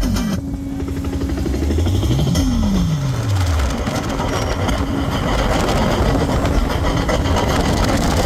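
Engines of a large group of motorcycles and scooters riding slowly together, a dense steady rumble, with a held tone through the first half and a falling pitch glide about two and a half seconds in.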